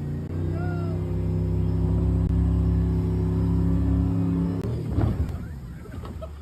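Motorboat engine running at a steady speed with an even low drone, which drops away about four and a half seconds in and gives way to a brief uneven jumble of noise.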